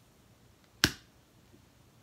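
One sharp, loud snap about a second in, short with a brief tail, over faint room tone.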